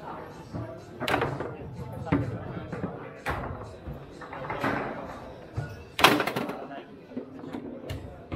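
Foosball table in play: hard clacks and knocks of the ball against the plastic men, rods and table walls, a few seconds apart, the loudest a quick cluster of bangs about six seconds in.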